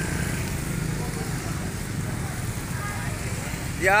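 Motor scooter engine idling close by, a steady low hum under general street noise.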